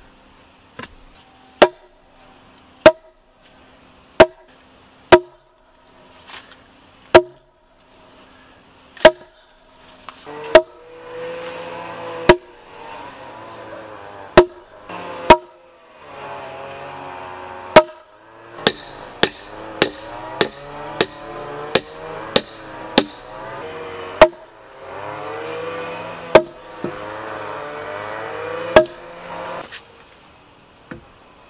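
Axe blows striking wood, knocking about once a second and coming faster for a few seconds past the middle, each with a short wooden ring. A softer continuous sound runs beneath from about a third of the way in.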